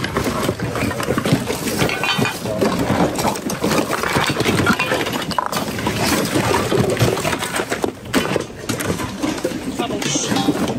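Plastic and household items knocking and rustling as a gloved hand rummages through a packed bin, with many short clatters, over a busy background of other people's voices.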